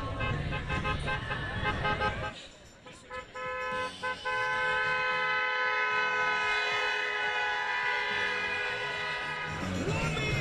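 A vehicle horn sounding, with two brief breaks a few seconds in, then held as one long steady honk for about six seconds. Crowd voices are heard for the first two seconds.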